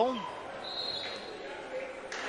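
Basketball court sound: arena hum with one high squeak lasting under a second, starting about half a second in, typical of sneakers on the hardwood floor.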